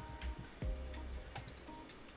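A few light, irregular computer-keyboard keystroke clicks over a faint low hum.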